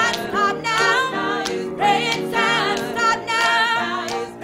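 Background music: a gospel-style choir singing, several voices with a wavering vibrato.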